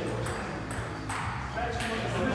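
Indistinct voices in a large gym hall, with several short high-pitched pings scattered through them.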